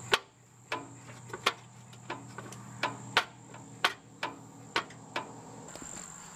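A series of about ten sharp, light clicks, roughly two a second at uneven spacing, stopping shortly before the end.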